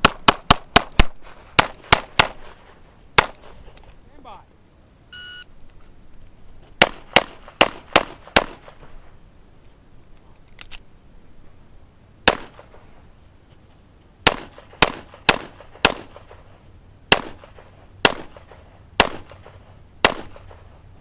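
Springfield XD(M) pistol firing rapid strings of shots, some about a fifth of a second apart. The strings come in several groups: a burst of about ten in the first three seconds, a lull, then groups of four or five separated by short pauses.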